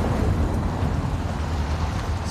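Steady low rumble with a faint hiss above it, unchanging across the moment.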